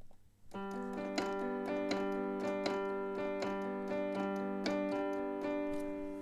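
A HALion Sonic SE software keyboard instrument plays notes as a MIDI part is recorded. It starts about half a second in and plays a steady chord-like sound, re-struck roughly twice a second.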